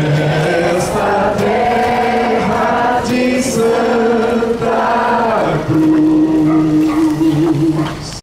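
A slow religious hymn sung in long held notes, ending on one long sustained note.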